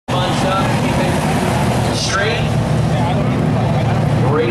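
A pack of pro stock race cars' V8 engines running together in a loud, continuous drone.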